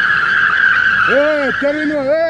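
Tyres of a BMW 530d sedan squealing in one long, steady, high squeal as the car slides sideways in a drift.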